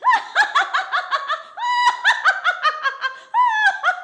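A woman's high-pitched, theatrical witch's cackle: a long run of quick 'ha-ha' pulses, about five a second, broken twice by longer drawn-out notes.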